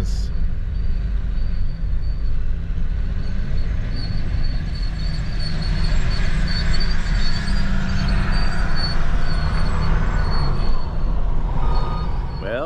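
Road noise inside a van's cabin as it drives slowly over a rough, wet gravel road: a steady low rumble with tyre crunch that grows louder about halfway through.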